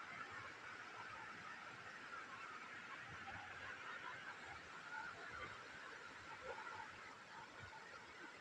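Small rocky stream burbling and rushing over stones, a faint, steady water sound.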